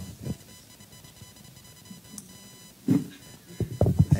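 Handheld microphone handling noise: a few soft knocks and bumps over quiet room tone with a faint steady high hum, and a short high tick about two seconds in.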